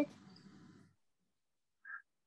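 The tail of a young girl's hesitant 'mm' fades out in the first second. Near silence follows, broken by a brief faint vocal sound near the end.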